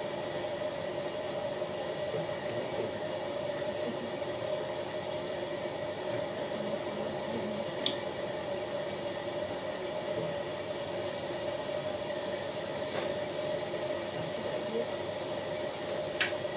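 Dental suction running with a steady hiss and a constant whine, with one sharp metallic click about halfway through.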